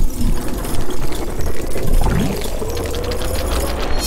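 Sound effects for an animated logo reveal: a heavy rumble with dense crackling, and a tone that slowly rises through the second half.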